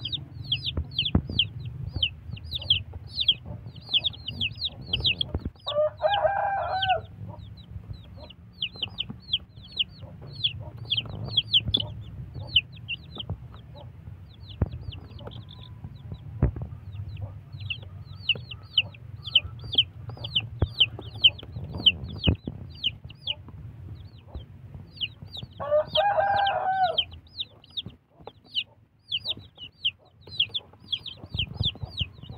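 Ten-day-old Jolo × Black Australorp crossbred chicks peeping constantly, in quick, high, falling peeps several a second. A rooster crows twice, about six seconds in and again late on.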